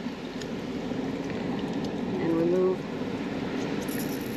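Steady surf and wind noise on a beach, with a brief hummed voice sound a little past two seconds in.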